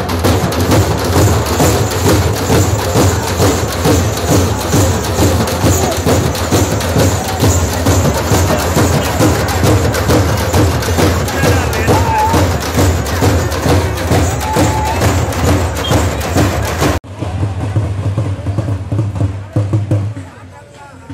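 Drums beaten hard with sticks in a fast, steady rhythm, with crowd voices mixed in. The drumming breaks off sharply near the end, carries on a little more quietly, and then fades down.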